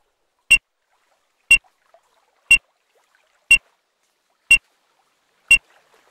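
Electronic race start timer beeping once a second, six short high beeps evenly spaced, ticking off the final minute of the start sequence.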